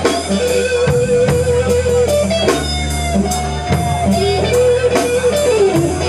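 Live blues band playing an instrumental passage: an electric guitar plays held, bending lead notes over bass guitar and a drum kit with regular cymbal and drum strikes.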